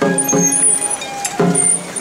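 Festival crowd and portable-shrine bearers calling out in rhythm, a loud burst of voices about every second and a half, with high ringing tones held over them.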